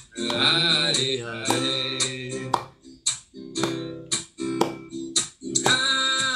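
A man singing a song with a strummed stringed instrument, in phrases with short breaks between them.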